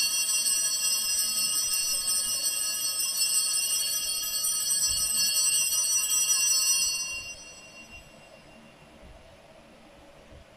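Altar bells (a cluster of small sanctus bells) shaken continuously at the elevation of the consecrated host, ringing steadily and brightly, then stopping about seven seconds in.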